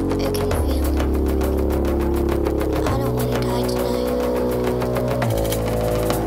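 Live electronic music: sustained bass notes that shift to a new pitch about every two seconds, under a fast, even ticking rhythm.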